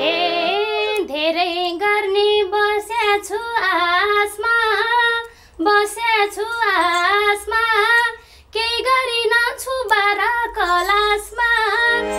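A woman singing a Nepali dohori folk melody solo in a high, ornamented voice, with no instruments playing under her. She breaks off briefly twice, a little past five seconds and again past eight.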